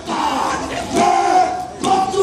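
Men's group war chant shouted in unison by many voices, in two loud phrases with a brief dip between them near the end.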